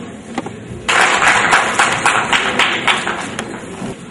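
Audience applause breaking out about a second in, a dense patter of many hands clapping that fades after a couple of seconds.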